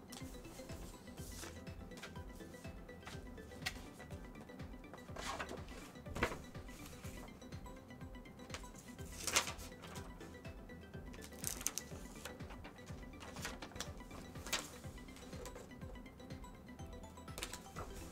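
Paper being handled: stickers and a sketchbook page rustled, smoothed and turned by hand, with scattered sharp clicks and taps, over quiet background music.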